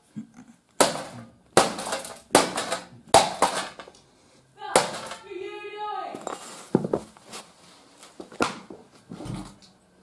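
A hammer pounding the metal casing of a broken DVD player: four sharp blows about 0.8 seconds apart, then a few more scattered knocks later on.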